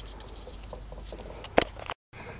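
Tape being pressed and smoothed by fingers onto the plastic housing of a security light to cover its photocell: faint crinkling and small clicks, with one sharper click about a second and a half in, over a steady low hum.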